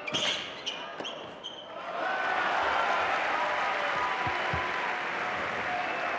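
The last few racket-on-ball hits of a tennis doubles rally, with short shoe squeaks on the indoor court. From about two seconds in, the arena crowd applauds and cheers the won point loudly and steadily.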